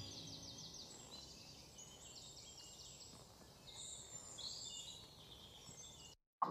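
Faint bird chirping: several short runs of quick, high chirps over a low steady hiss.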